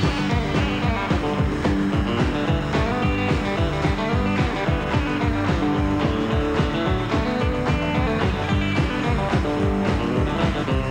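Rockabilly band playing an instrumental passage led by electric guitar over a fast, steady beat.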